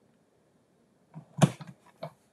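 Near silence, then about one and a half seconds in a single sharp plastic clack with a few softer handling sounds around it: the clear acrylic cutting plates of a Stampin' Cut & Emboss die-cutting machine being lifted and handled.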